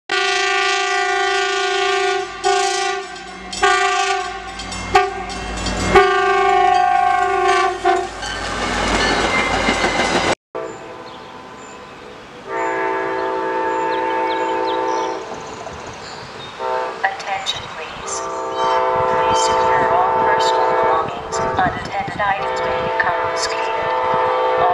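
Locomotive horn sounding a series of blasts, then the rising rush of a train passing on the rails, which cuts off suddenly. A train horn then blows again in three long blasts.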